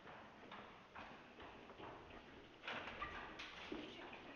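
Faint footsteps of a person walking at a steady pace, about two steps a second.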